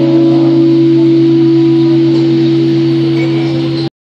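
The closing chord on an acoustic guitar, held and ringing out steadily with only a slight fade, then cut off abruptly just before the end.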